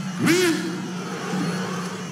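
A voice's single short exclamation, rising then falling in pitch, about a quarter second in, over steady background noise and a low hum in the broadcast sound of a kickboxing bout.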